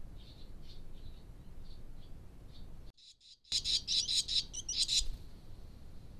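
Barn swallow chicks in the nest calling: soft chirps about two or three a second, then a brief break in the sound, then a louder, rapid burst of twittering chirps lasting about a second and a half.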